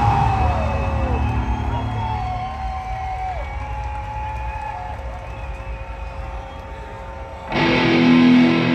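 Live rock band through amphitheater PA: held and sliding tones over a low rumble as a song's intro builds, then the full band kicks in loudly with distorted electric guitar about seven and a half seconds in.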